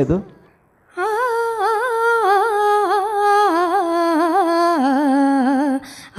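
A girl's solo voice sings one long, continuous, unaccompanied melodic phrase with quick wavering turns of pitch, moving gradually lower. It starts about a second in and breaks off just before the end.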